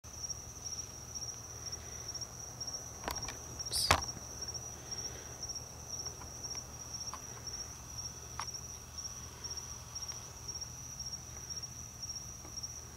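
Night insects, crickets, chirping in a steady, continuous high-pitched trill. A couple of sharp clicks cut in about three and four seconds in, the second the loudest.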